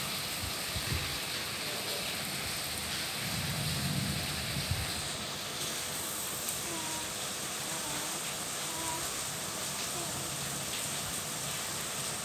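Steady background hiss, with a soft low rustle in the middle and a few faint, brief voice-like sounds after it; no clear sound event.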